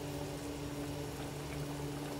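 Sweet and sour sauce simmering in a wok, with a steady low hum underneath.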